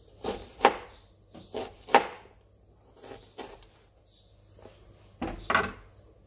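Kitchen knife dicing an onion, the blade knocking on a plastic chopping board in irregular clusters of a few strokes each, with a heavier knock near the end.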